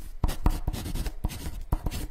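Pen writing on paper: quick, irregular scratching strokes, several a second.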